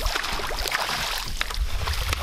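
A hooked fish splashing and thrashing at the water surface beside a boat as it is brought to the landing net: a dense, uneven splashing hiss with many sharp slaps.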